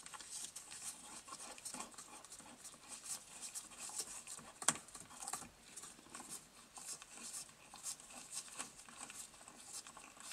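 Faint scratching and small clicks of nitrile-gloved fingers turning the retaining nut of a Porsche 911 Carrera 3.2's dashboard headlight switch to unscrew it, with one sharper click about halfway through.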